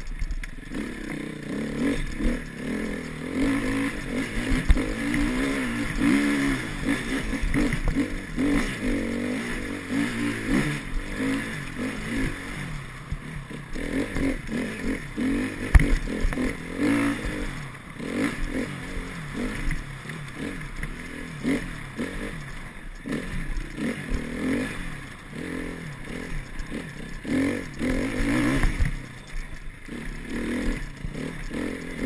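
Enduro dirt bike engine heard from the rider's helmet, revving up and down constantly as it is ridden over a rough trail, with knocks and rattles from the bike over bumps; a sharp knock about halfway through is the loudest moment.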